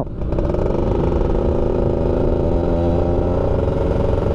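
Two-stroke single-cylinder engine of a 2002 Yamaha F1ZR motorcycle running at a steady, nearly even pitch while riding, heard from the rider's seat over a low road rumble.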